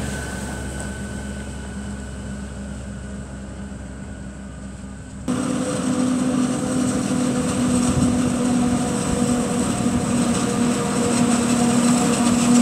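A tractor towing a silage trailer drives past, its engine and rumble slowly fading. About five seconds in, an abrupt cut to the louder, steady drone of a Claas Jaguar 950 forage harvester chopping maize, with a tractor and trailer running alongside it.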